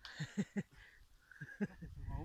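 Handling noise from a thumb pressing and shifting over the phone's microphone: a few short, soft rubbing thumps.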